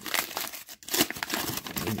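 Red paper wrapping around a taped card pack crinkling and tearing as it is pulled open by hand, a dense crackle with a brief pause a little under a second in.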